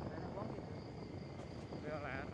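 Insects trilling in one steady high-pitched tone over a low steady rumble.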